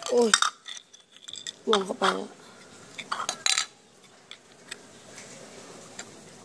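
Hard plastic parts clicking and clattering as they are handled and set down on a stone floor, with a cluster of sharp clicks about three seconds in.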